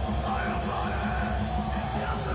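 Thrash metal band playing live: distorted guitars and bass over fast, steady drumming, with a shouted vocal line.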